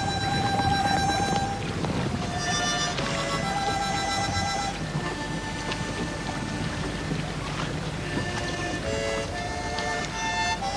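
Film-score music: a violin holding long notes with vibrato, moving to a new pitch every second or two, over a steady rushing background noise.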